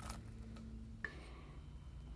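Quiet room tone with a faint low hum that stops with a single soft click about a second in.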